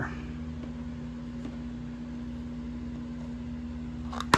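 A steady machine hum with one constant low tone, as from a fan or air-conditioning unit running in a small room.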